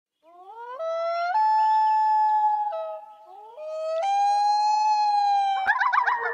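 Two long animal howls. Each rises in pitch at its start and then holds a steady, high pitch for about two seconds, the second beginning just after the first dies away. A sharp click and a brief warbling sound come just before the end.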